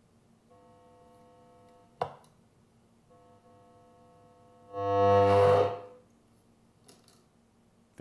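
Orange Crush BXT 50 bass amp's speaker coming back to life: a steady pitched buzzy tone cuts in faintly, breaks off with a click about two seconds in, returns, then sounds loud and distorted for about a second near the middle. The output returns as a good resistor is jumpered across the faulty mute resistor R41 on the LM3886 power amp chip, which had been holding the amp muted with zero output.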